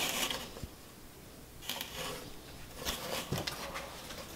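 Faint rustling and handling of a printed T-shirt's fabric, in a few soft brief bursts.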